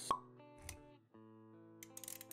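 A sharp pop sound effect just after the start, then a soft low thump, over background music with held notes.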